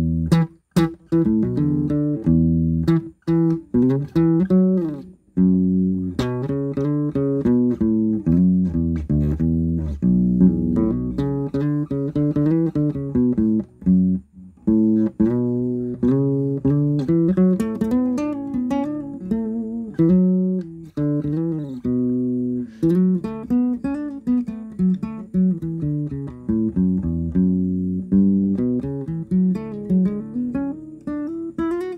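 Yamaha CG-40 nylon-string classical guitar in a lowered baritone tuning, played fingerstyle: a melody of plucked notes and chords over low bass notes, with a few brief pauses.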